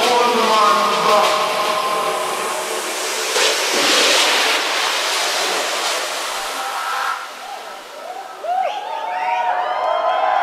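Breakdown in a techno DJ set, with the kick drum and bass dropped out. Held synth chords fade into a swelling and fading noise sweep about four seconds in. Near the end come gliding, bending tones.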